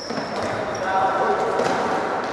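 Futsal ball being kicked and bouncing on a hard indoor court, a few dull thuds, over players' and spectators' voices shouting.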